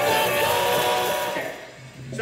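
Live rock band playing, led by electric guitar with drums behind it; the music fades out about one and a half seconds in.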